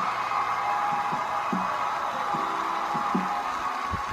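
Studio audience applauding and cheering, a steady wash of clapping with scattered shouts, heard through a television's speaker.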